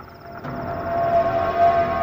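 A single held tone on the film soundtrack, swelling in about half a second in and then sustained at one steady pitch, with a faint high whine above it.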